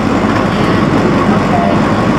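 Blackpool tram running along the track, heard from inside the car as a steady running noise.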